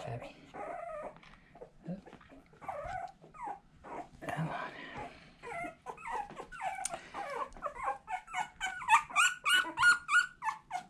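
16-day-old boxer puppies crying in short, high-pitched whines and squeaks, coming thick and fast in the last few seconds.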